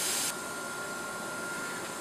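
Compressed air hissing steadily out of the bleed valve of a PCP air rifle's air tube as the tube is depressurised. The hiss drops off sharply about a third of a second in, leaving a fainter steady hiss.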